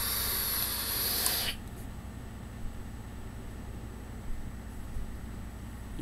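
Sub-ohm vape, a Velocity rebuildable dripping atomizer with a 0.22-ohm coil at 60 watts and its airflow fully open, being drawn on: a steady hiss of air through the atomizer for about a second and a half, then it stops.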